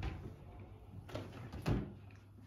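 Kitchen base-cabinet door being opened, with three short knocks and clicks: one at the start and two more in the second half.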